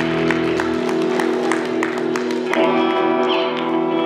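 Live rock band playing: ringing, held electric guitar chords over a steady drum pulse of about three hits a second. The deepest notes drop out under a second in, and a new chord is struck about two and a half seconds in.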